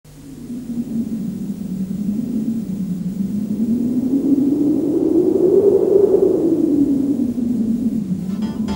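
Low, howling wind-like rush that fades in, climbs in pitch about three-quarters of the way through, then sinks again.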